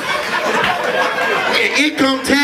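Overlapping voices: indistinct talking and crowd chatter, with no other sound standing out.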